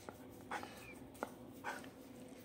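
German Shepherd dog whimpering faintly: two short breathy sounds, about half a second in and near the end, with a thin high whine between them. There are also a couple of light clicks.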